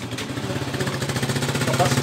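A small motor running with a steady low, rapidly pulsing hum that grows louder.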